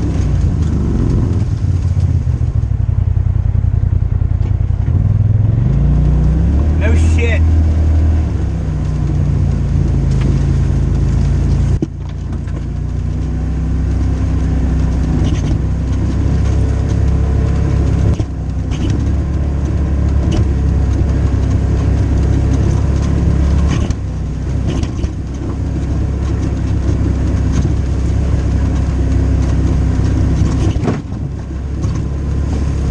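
Dirt bike engine running under load on a trail, its pitch rising and falling with the throttle. The level drops suddenly where the throttle is shut, about twelve, eighteen and twenty-four seconds in.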